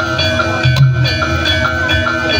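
Javanese gamelan music for a kuda lumping dance: bronze metallophones struck in a quick repeating pattern, their notes ringing on, with a heavier drum stroke about a second in.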